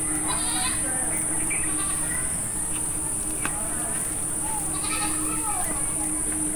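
Goats bleating a few times, once near the start and once near the end, over a steady high-pitched insect drone.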